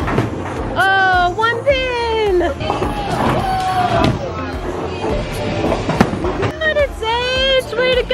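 A bowling ball released from a children's plastic ramp rolls down the lane over a steady low rumble, with high-pitched children's calls and background music. A single sharp knock comes about six seconds in.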